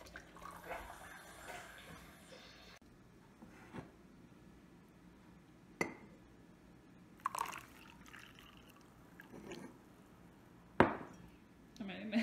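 Sharp clinks of ceramic mugs and a metal spoon, five or so of them a second or two apart, the loudest near the end, with coffee dripping and trickling as it is poured into a mug of hot cocoa.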